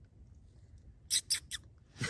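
Three brief crackling rustles of leaf litter about a fifth of a second apart, over a faint low background.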